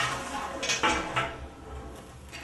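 A chrome single-hole faucet knocking and clinking against a vanity sink as it is handled and set into its mounting hole, with a few sharp clinks in the first second or so, then softer handling noise.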